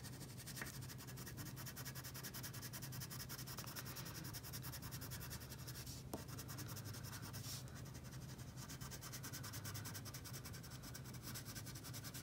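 Wax crayon scribbling back and forth on paper: a faint, steady, scratchy rubbing of quick short strokes as a small area of a drawing is colored in.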